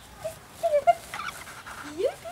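Cairn terrier giving several short, high-pitched yips and whines during play, the loudest just before the middle and a rising one at the end.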